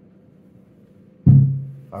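Faint steady low hum from a powered speaker amplifying an acoustic guitar's under-saddle pickup and preamp. About a second in comes a sudden loud low thump through the speaker that dies away over about half a second.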